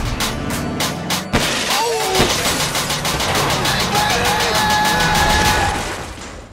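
Trailer background music with a fast, steady beat, joined by held melodic notes in its second half, fading near the end.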